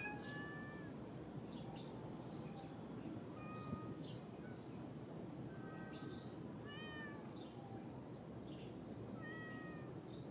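Cat meowing softly several times, short calls spaced a few seconds apart, from the Persian cat.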